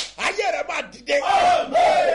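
A man's voice shouting loudly in short, high-pitched phrases.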